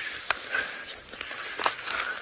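Quiet outdoor bush ambience with a few short clicks and light rustling as a person settles down to sit, about a third of a second in and again past a second and a half.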